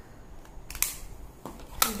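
Makeup palette cases being handled between products: a brief rustle a little under a second in, then a sharp plastic click just before speech resumes.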